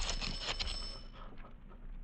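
A doorbell's ringing tone dying away over the first second, leaving only a low background hum. It is a radio-drama sound effect announcing someone at the front door.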